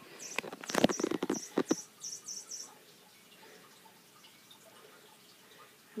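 Electronic squeaking cat toy giving a quick run of short, very high chirps, with a few loud knocks as cats handle it. It falls near silent about halfway through.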